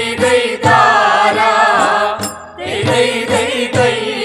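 A Malayalam folk song (nadanpattu) being sung to musical accompaniment, with a long wavering held note between about half a second and two seconds in.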